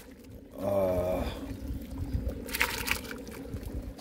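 Shredded chicken tipped from a steel bowl into a large cauldron of watery porridge, splashing and pouring into the liquid, with a brief splash near the end. A short wordless voice hums about a second in.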